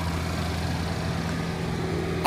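2011 Buick Regal's 2.4-litre four-cylinder engine idling steadily with the hood open.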